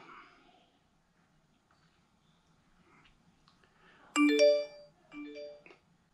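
A short electronic chime sounding twice, about a second apart, the first longer and louder than the second.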